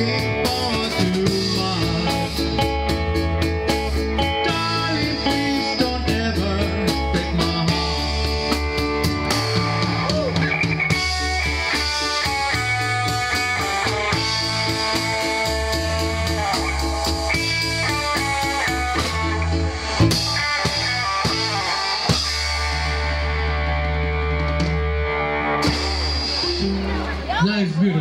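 A live rock band plays an oldies tune: drum kit, electric guitar and a Yamaha MO6 keyboard together. The cymbals drop out near the end.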